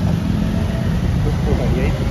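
Motorbike traffic heard from a moving motorbike: a steady low rumble of engines and road noise, with faint voices over it.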